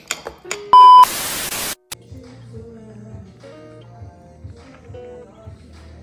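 A loud, steady electronic beep about a second in, running straight into under a second of static-like hiss, then background music with a steady bass line.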